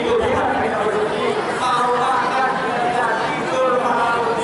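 Speech amplified through a microphone and loudspeaker, with the chatter of a large seated crowd.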